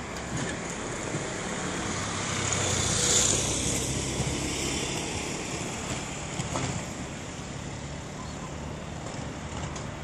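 Street traffic: a vehicle passes, growing louder to about three seconds in and then fading, over a steady low hum.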